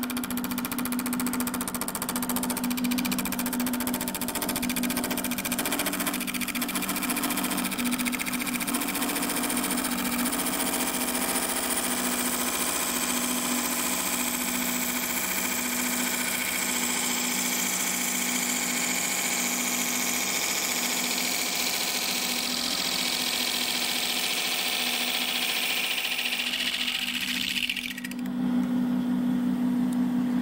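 McNaughton Center Saver coring blade in a steady plunge into a bowl blank spinning on a wood lathe: a continuous cutting hiss over the lathe motor's steady hum. The cutting eases off about two seconds before the end.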